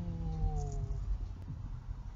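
A drawn-out, voice-like call lasting about a second, falling slightly in pitch and ending about a second in, over the steady low rumble of a moving car.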